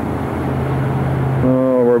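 Steady rushing outdoor noise with a low hum, then a man starts speaking near the end.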